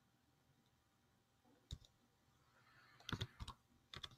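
A few computer keyboard key clicks over near silence: one click a little under two seconds in, then a quick run of several clicks about three seconds in.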